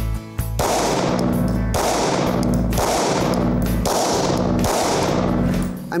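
Five shots from a Caracal Enhanced F 9mm striker-fired pistol, fired at an even pace of about one a second, each echoing in an indoor range. Background music runs underneath.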